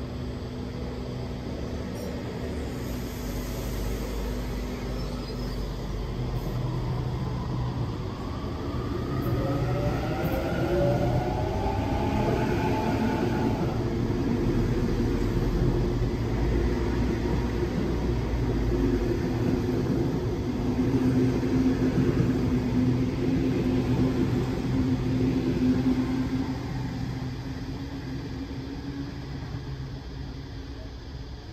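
Double-deck Sydney Trains electric suburban train departing a platform: a steady low hum at first, then a rising electric motor whine about ten seconds in as it accelerates, followed by the carriages rolling past, loudest a little past halfway and easing off near the end.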